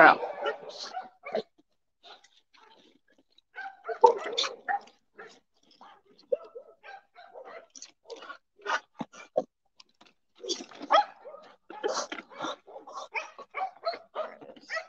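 Several dogs crowding close with short, scattered whines and barks, mixed with the chewing of treats.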